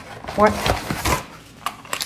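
Short clicks and knocks of a parcel being unpacked by hand at a table, with a couple of sharp ones near the end.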